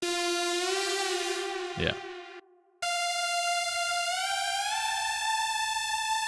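Serum software synth playing a buzzy sawtooth lead: a held note, then after a brief break a higher note that slides smoothly up in pitch about four seconds in, a legato glide between the notes.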